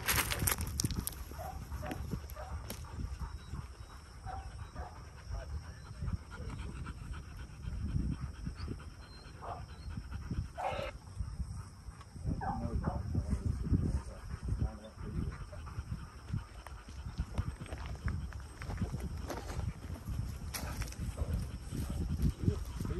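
Retriever panting, with gusty wind buffeting the microphone.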